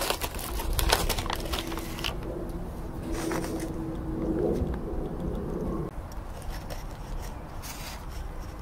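A dove cooing low and steady, stopping sharply about six seconds in. Over it, light clicks and rustles of gummy candy blocks being pressed together on a paper plate, mostly in the first two seconds.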